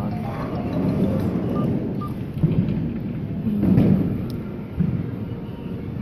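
Arcade din around a claw machine: a steady low rumble of machines and room noise, with two short faint electronic beeps about a second and a half in and a louder swell of noise near the end.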